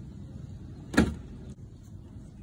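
A steel tape measure being handled against a wooden rafter and beam: one short, sharp sliding knock about a second in, over a low steady background hum.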